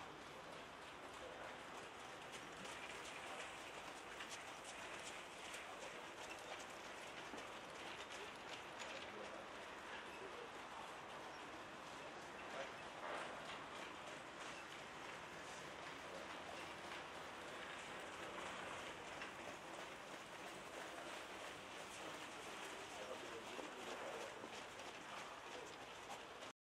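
Faint hoofbeats of trotting horses over a steady, even background noise.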